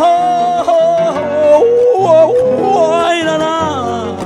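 A man's long wordless sung wail, the held 'ay' lament of a Panamanian décima singer, gliding up and down in pitch, over strummed acoustic guitars.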